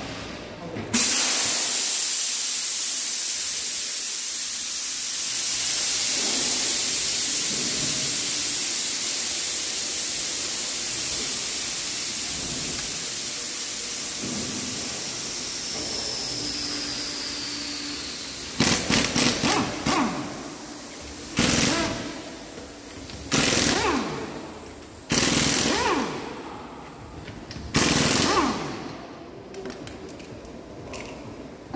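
A loud hiss of escaping compressed air starts suddenly about a second in and fades slowly over some seventeen seconds. Then a pneumatic impact wrench rattles in short bursts on a car's wheel nuts: first a stuttering run of quick bursts, then four single bursts about two seconds apart.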